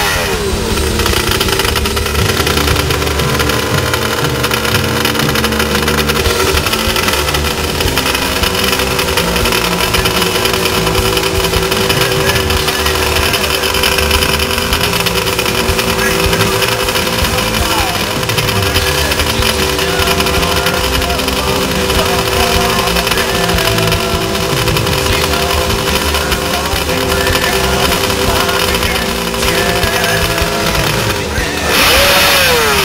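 Kawasaki 750 H2 three-cylinder two-stroke engine running at a steady idle, its revs settling with a falling note right at the start.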